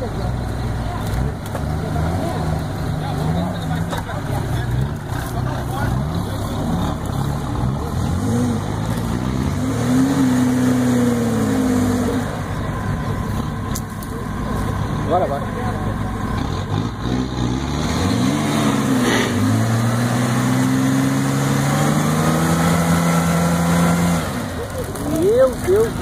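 Four-wheel-drive engines revving under heavy load while a mud-stuck Jeep is pulled out on a tow strap. The revs rise and fall in surges, with two longer held pulls about ten and twenty seconds in.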